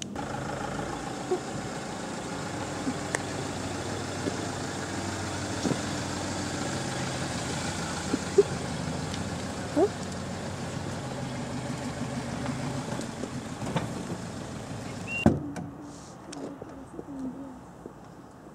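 A van's engine running steadily, with a few faint clicks. About fifteen seconds in there is a sharp thump, and after it the engine sound is gone and it is much quieter.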